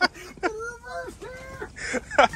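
Quiet, indistinct talking from a man's voice.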